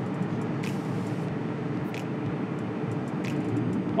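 The twin inboard engines of a 40-foot sport fishing boat running steadily at low speed during close-quarters manoeuvring, giving a low, even hum.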